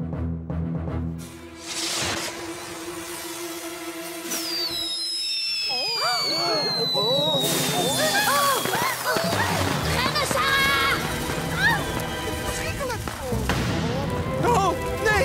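Cartoon fireworks going off over dramatic music. A long falling whistle starts about four seconds in, followed by a string of short whistling, crackling fireworks.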